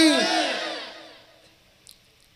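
A man's voice holding the end of a long chanted note into microphones, its echo fading out over about a second, then silence with one faint click near the end.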